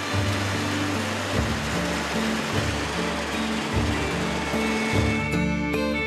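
Background music with slow, steady bass notes over the even hiss of a grain auger discharging grain from its spout; the hiss stops about five seconds in, leaving the music alone.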